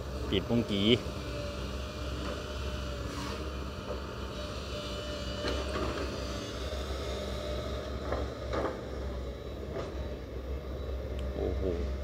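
Sumitomo hydraulic excavator's diesel engine running with a steady low drone as the machine lifts and swings a bucket of mud.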